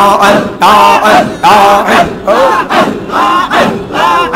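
A large crowd of men chanting zikir (dhikr) together, loud rhythmic phrases repeating about every half second.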